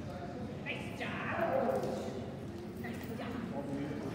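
Short spoken calls in a large echoing hall, loudest between about one and two seconds in, over footsteps and a dog's paws moving on the floor.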